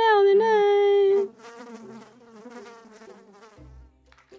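A cartoon cat character's exaggerated crying: a loud, high, buzzy drawn-out wail that cuts off about a second in, followed by much quieter, lower whimpering.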